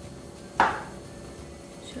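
Granulated sugar tipped from a small glass into a pot of milk: one short pouring splash about half a second in, fading quickly.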